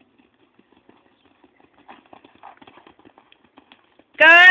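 Faint, irregular hoofbeats of a ridden horse moving over a grass field, coming thicker in the second half.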